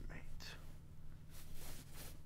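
A man's soft whispering and breaths close to the microphone, over a steady low hum.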